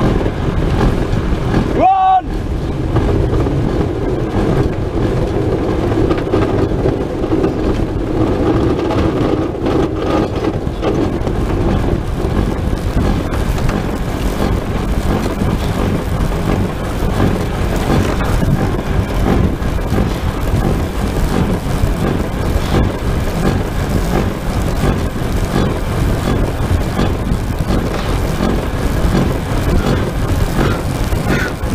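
Steady rushing wind and low rumble picked up by a camera inside the clear fairing of a pedal-powered aircraft as it moves fast along the runway. A brief shouted voice comes about two seconds in.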